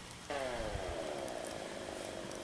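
A distant motor vehicle's engine drone sets in about a quarter second in, its pitch sinking slowly as it passes.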